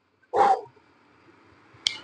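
A man's short, breathy 'hoo' through rounded lips, about half a second long. A single sharp click follows near the end.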